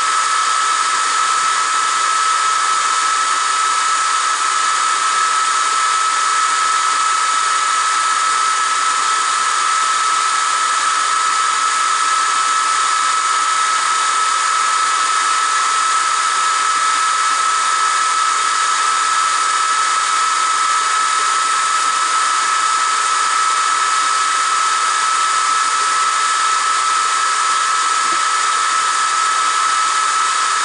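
Atomstack X20 Pro diode laser engraver running while it etches stainless steel: a steady, loud high whine over an even hiss of rushing air, unchanging throughout.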